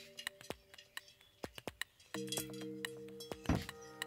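Loose bicycle spokes clinking against each other and the rim as they are threaded into the rim's spoke holes, in many sharp, irregular clicks. Background music with long held notes comes in about halfway.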